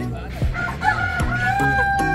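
Recorded rooster crowing played back from the Bremen Hole, a coin-operated box under a manhole cover that answers a dropped coin with the calls of the Town Musicians' animals. The crow is one long, held call building through the second half.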